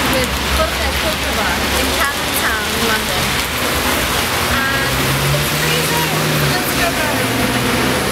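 Rainy city street: a steady hiss of rain and wet traffic, with people's voices in the background and a vehicle engine humming for about a second and a half, about five seconds in.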